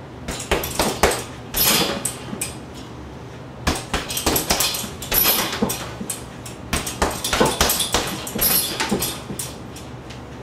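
Fists striking a duct-taped hanging heavy bag in quick flurries of punches and hammer fists: clusters of sharp thuds with short pauses between combinations.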